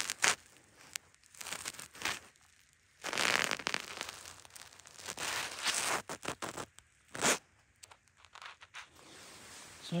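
Handling noise: clothing and a hand-held rock rustling and scraping close to the microphone, with a few sharp clicks and a longer rustle about three seconds in.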